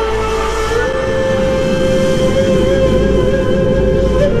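Ney (Sufi reed flute) holding one long note over a low drone, gliding up to it about a second in, in a slow Middle Eastern new-age piece.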